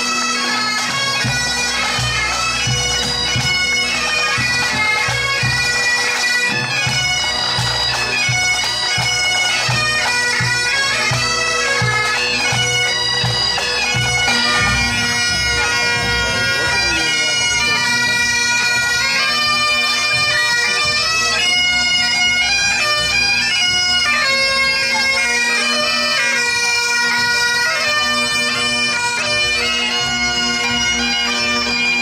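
Scottish pipe band playing: bagpipes with a steady drone under the chanter melody, and drums keeping a regular beat, more prominent in the first half.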